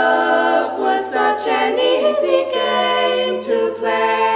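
Female barbershop quartet singing a cappella in close four-part harmony, holding sustained chords that change every second or so; a new chord comes in right at the start after a brief breath.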